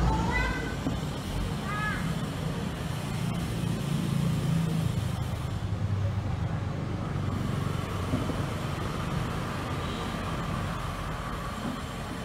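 Steady road traffic noise with a low engine hum, with a few short voice sounds in the first two seconds.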